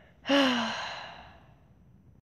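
A person's sigh: one breathy exhale with a falling voice, starting suddenly and trailing off over about a second and a half.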